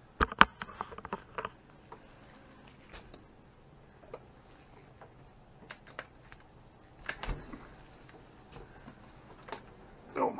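Metal hive tool prying and knocking on a wooden beehive's honey super to work it loose: a cluster of sharp knocks about half a second in, then scattered light clicks, with another knock cluster about seven seconds in.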